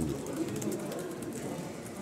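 Faint murmur of several people talking in the background of an indoor press scrum, with no single voice standing out.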